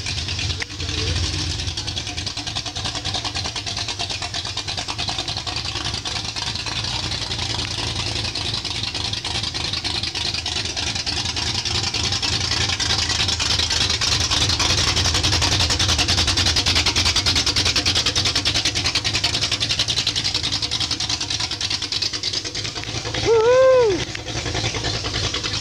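A loud hot-rod panel wagon's engine and exhaust running as the car drives slowly by, getting louder to a peak a little past the middle and then easing off. Its owners' words for it: loud and stinky.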